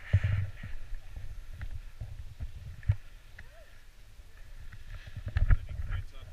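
Wind rumble and handling bumps on an action camera's microphone: an uneven low rumble with sudden thumps right at the start, about three seconds in, and the loudest about five and a half seconds in, with a few faint clicks between.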